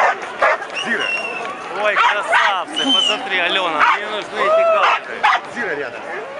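Crowd voices shouting and calling over one another, with a dog heard among them.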